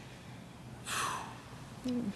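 A short, breathy gasp about a second in, followed near the end by a brief low voiced 'mm'.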